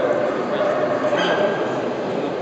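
Dogs barking and yipping over a steady hubbub of voices in a large hall, with one short high call about a second in.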